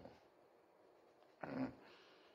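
Mostly near silence, then a man's single short hummed 'un' of agreement about one and a half seconds in.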